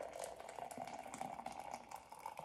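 Hot water pouring steadily from a kettle into a tall ceramic mug.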